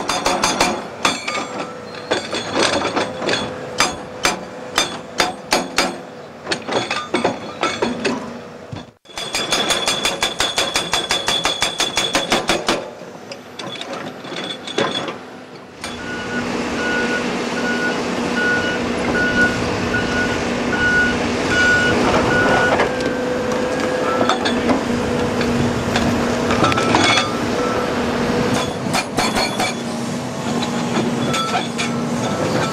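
Indeco hydraulic hammer on an excavator pounding rock, a rapid train of sharp metallic blows, very fast and even in a stretch near the middle. Later the blows merge into a steadier din over the excavator's engine, with a reversing alarm beeping for several seconds.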